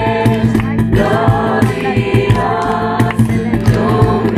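A group of voices singing a worship song together in unison, accompanied by strummed acoustic guitar and a steady beat struck on a cajón.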